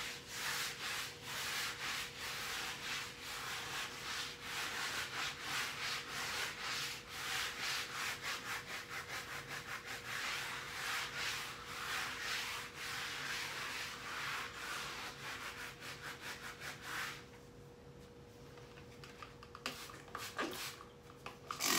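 A scrub sponge rubbed hard back and forth on a wall in quick, repeated strokes; the scrubbing stops about three seconds before the end.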